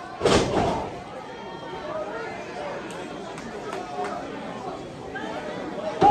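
One loud slam about a quarter second in, a wrestler's body hitting the ring mat, with a short ring-out after it. The crowd keeps talking and calling out afterwards.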